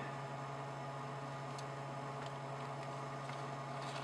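Steady low electrical hum over a faint hiss, with a single faint click about a second and a half in.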